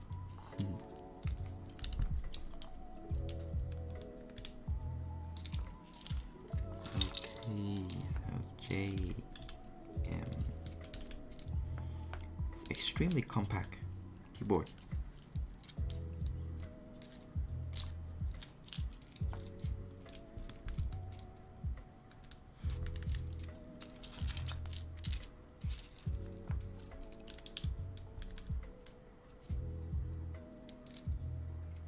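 Lofi background music with a steady repeating beat, over scattered plastic clicks and clacks of GMK keycaps being picked from a pile and pressed onto the switches of a Daisy 40 mechanical keyboard.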